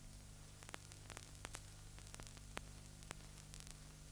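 Faint noise from an old film soundtrack: a steady low hum and hiss with scattered faint clicks and crackles.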